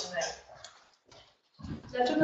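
A woman's speech trailing off, a short pause of near silence, then a voice starting up again near the end.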